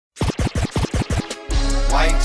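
Hip hop intro: about six quick turntable scratches in a row, then a beat with a deep steady bass comes in about one and a half seconds in.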